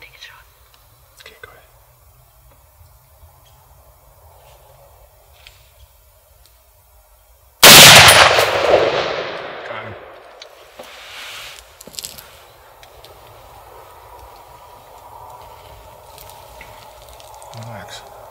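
A single hunting rifle shot fired at a whitetail buck about halfway through: one sudden, very loud report that rolls away and fades over about two seconds.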